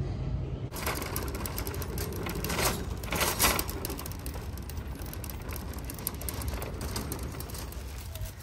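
Shopping cart rolling over asphalt, its wheels and frame rattling in a dense, continuous clatter that begins abruptly about a second in, with a few louder jolts.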